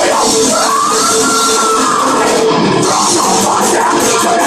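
Melodic death metal band playing live: distorted electric guitars over a drum kit, loud and dense throughout. About a second in, a high note rises and glides back down.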